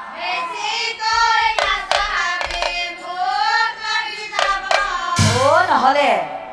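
A woman singing a folk melody, her voice gliding up and down, with a few sharp percussive strikes spread through the phrase. A loud crash of percussion comes near the end.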